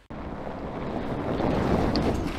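Hydrogen fuel cell Toyota Hilux driving past on loose gravel, its tyres crunching and rumbling. The noise starts suddenly just after the start and swells toward the end.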